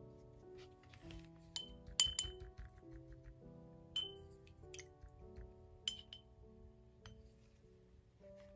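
A paintbrush clinking against a glass container a handful of times as it is dipped and worked, each clink sharp with a short ring; the loudest comes about two seconds in. Soft background music plays under it.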